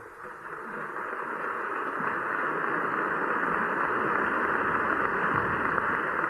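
Theatre audience applauding, swelling over the first two seconds and then holding steady.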